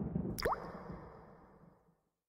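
A single water-drop sound effect, a sharp click with a quick upward-sliding pitch, laid over a low rumble that fades out to silence near the end.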